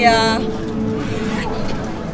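A short vocal sound from a person at the start, then a steady low hum with a single held tone underneath.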